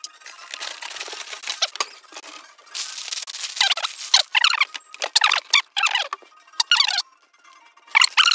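Clear plastic LEGO parts bags crinkling and rustling as hands spread and shuffle them on a table, with several short squeaks of plastic rubbing on plastic in the second half.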